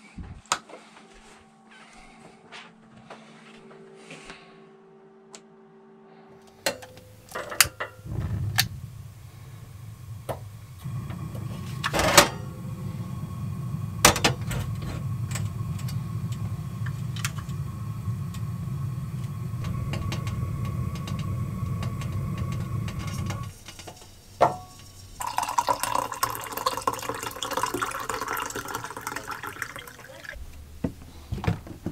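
A few clicks, then a propane stove burner running steadily under an enamel percolator coffee pot for about fifteen seconds. Near the end, coffee is poured from the pot into a mug.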